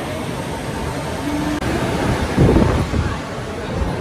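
Steady rushing wind noise on a phone microphone, with a louder low gust about two and a half seconds in, over the murmur of a crowd.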